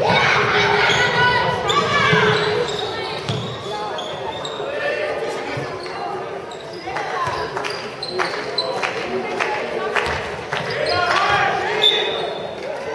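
A handball bouncing and knocking on a sports hall floor during play, mixed with players' shouted calls, all echoing in a large hall. The voices are loudest in the first two seconds and again near the end.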